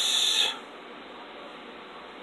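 A man's singing voice trails off in a drawn-out hissed "s" that stops about half a second in, leaving only faint room hiss.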